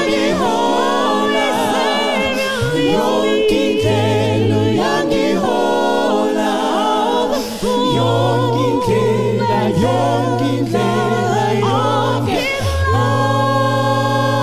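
Mixed gospel vocal group singing a cappella in harmony through microphones, women's voices with wide vibrato on top over a low bass part held underneath.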